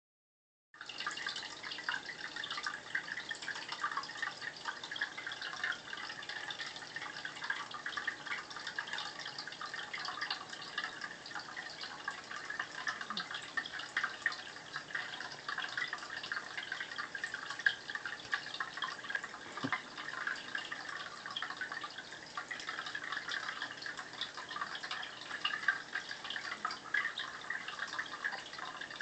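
Steady trickling and splashing of aquarium water: a dense, unbroken crackle of many small splashes.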